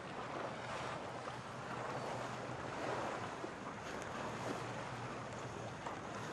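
Wind and choppy sea water rushing and splashing around racing Yngling keelboats, rising and falling in surges, with wind buffeting the microphone.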